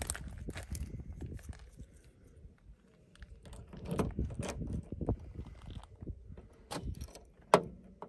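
Car keys jangling and a key working the door lock of a Mercedes W123, with scattered clicks and a sharp click near the end as the vacuum-operated central locking works.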